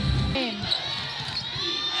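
A basketball being dribbled on a hardwood court over arena background noise, after a brief music bed cuts off about half a second in.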